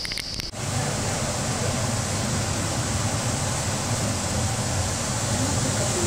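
Steady rushing air noise with a low hum from the ventilation fans of a silkworm rearing room; it starts abruptly about half a second in and holds level.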